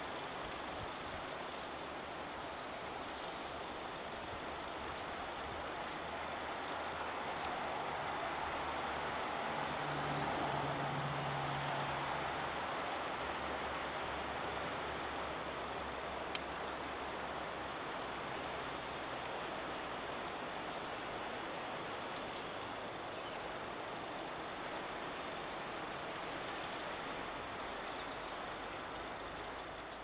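Steady outdoor woodland hiss with small birds giving brief high chirps every few seconds. A faint low hum swells and fades about ten seconds in.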